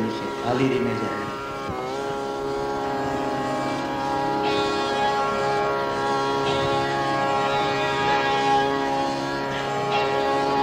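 Hindustani classical music: a short stretch of voice at the start, then a long, steady held note over a drone.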